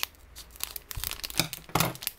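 Plastic packaging being torn open and crinkled by hand: a run of sharp crackles and rips, loudest near the end.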